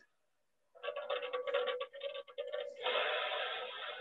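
Wood-fired stationary steam engine running, driving a flywheel and belt. It starts under a second in with a rapid irregular clatter and settles into a steady mechanical noise after about two seconds, sounding thin as a home-video recording played over a video call.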